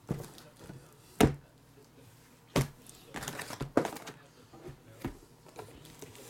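Sealed cardboard trading-card boxes being lifted, shifted and set down on a table mat by hand, making a series of sharp knocks. The loudest knock comes about a second in, with a cluster of smaller knocks around the middle.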